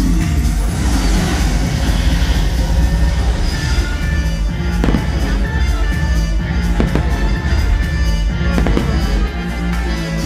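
Show music over a loud sound system with fireworks bursting overhead: several sharp bangs in the second half, the last ones in a quick crackling cluster.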